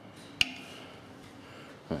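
One sharp click with a brief metallic ring, about half a second in, from the upright weaving-loom exhibit as yarn is worked between its strings. Otherwise only quiet room tone.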